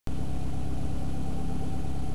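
Car engine idling steadily, heard close up in the open engine bay, with a thin steady whine above the engine note.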